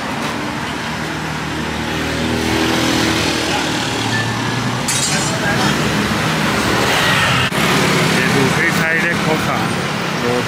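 Road traffic at night: car and motorbike engines passing, with people's voices in the background, some talk near the end.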